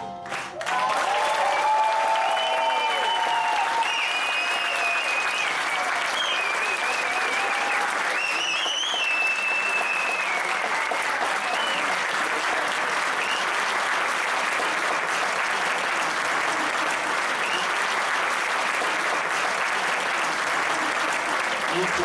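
Concert audience applauding at length after a song ends, with cheering and whistling over the clapping during roughly the first ten seconds.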